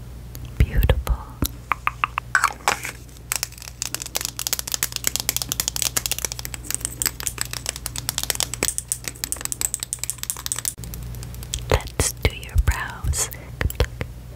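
Long fingernails tapping fast on plastic makeup packaging, a lipstick tube and a cosmetics bottle. The taps make a dense run of light clicks, thickest from about three to eleven seconds in.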